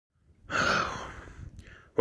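A man's heavy sigh: a long breathy exhale that starts suddenly and fades over about a second, with a faint short breath near the end.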